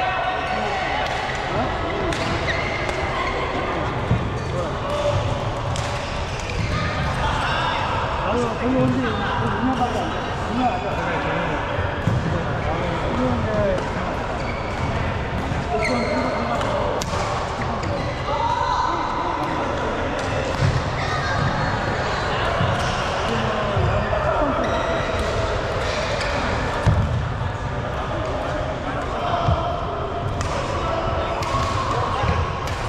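Echoing chatter of many people across a large badminton hall, with occasional sharp racket hits on the shuttlecock and thuds of footfalls on the court floor.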